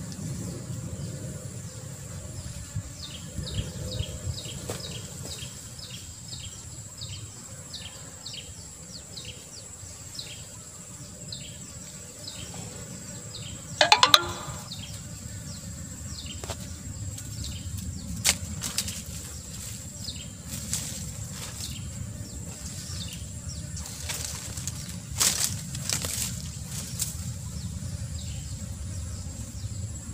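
Rustling and scuffing in dry leaf litter as rope is worked around a captured monitor lizard, with a sharp, loud clatter of handling noise about halfway through and a few more knocks later. A steady high insect drone runs underneath, and short high chirps repeat two or three times a second through the first half.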